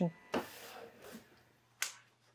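A single sharp finger snap near the end, after a few faint trailing sounds of a voice.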